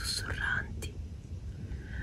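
A woman's short, soft breathy sound at the start, then only a low rumble.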